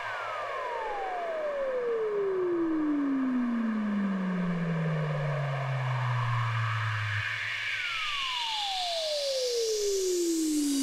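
Drumless outro of a 1997 deep house track: a synthesizer tone glides slowly down in pitch over about seven seconds above a low held bass note. The bass drops away about seven seconds in, and a second falling glide begins.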